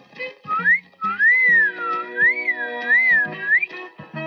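A person whistling a wavering tune, the pitch swooping up and down repeatedly, starting about half a second in and stopping just before the end, over background film music.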